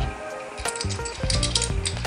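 Background music with a steady beat and held notes, with a few light clicks near the middle.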